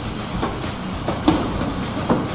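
Boxing sparring: a few sharp thuds of gloves striking and feet moving on the ring canvas, about half a second in and twice just after a second in, over a steady background noise.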